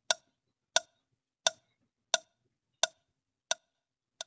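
A clock ticking: six sharp, evenly spaced ticks, about three every two seconds.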